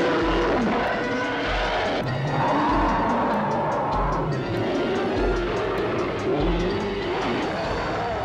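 Monster-movie fight soundtrack: dramatic film music with a low drum beat about once a second, and loud screeching, roaring creature effects over it.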